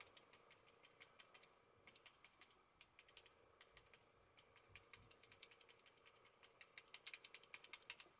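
Foam spouncer pouncing paint through a stencil onto paper: rapid, faint soft taps, several a second, coming quicker and a little louder near the end.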